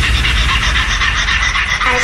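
Frenchcore track in a breakdown: the pounding kick drum drops out, leaving a rapid, evenly spaced high ticking rhythm, and a voice sample comes in near the end.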